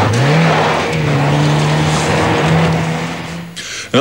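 A small hatchback car's engine revving hard as the car is driven off fast on a dirt road. Its pitch climbs over the first half second, then holds high, over a hiss of tyres churning on loose dirt, and fades out just before the end.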